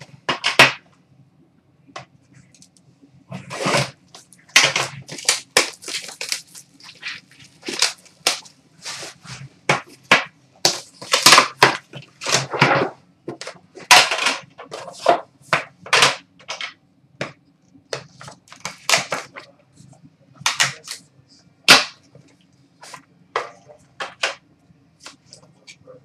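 Sealed box of trading cards being unwrapped and opened: a long run of irregular, sharp crackles and crinkles of plastic wrapping being torn off and crumpled, with clicks of the cardboard box being handled.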